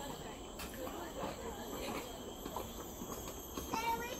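Steady high-pitched drone of forest insects, with faint voices of people underneath and a brief louder voice near the end.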